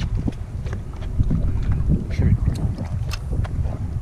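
Wind buffeting the microphone on an open boat, a steady low rumble, with scattered small knocks and splashes over choppy water.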